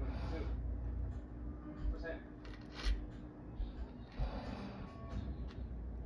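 Faint voices and music in the background, with a few light clicks about two and three seconds in.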